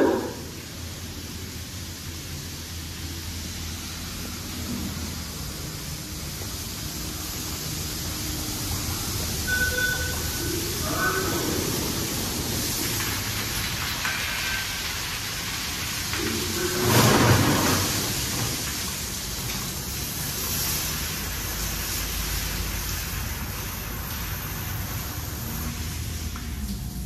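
Washworld Razor Double Barrel touchless car wash arm spraying cleaning solution onto a car: a steady hiss of spray on the bodywork, swelling loudest about seventeen seconds in as the jets pass close.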